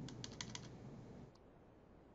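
Faint keystrokes on a computer keyboard: a quick run of about half a dozen taps in the first second, then one more tap a little later.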